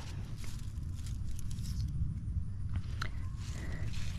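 Tomato leaves and stems rustling as a hand pushes through the plant's foliage, with a few light crackles, over a steady low rumble on the microphone.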